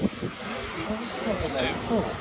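Indistinct voices of people nearby talking, over a low rumble of wind on the microphone.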